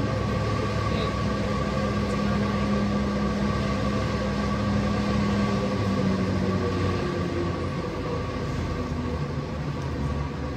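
Aerial ropeway station machinery running with a steady mechanical hum of several held tones as the haul rope draws a gondola in. A low tone in the hum fades about seven seconds in.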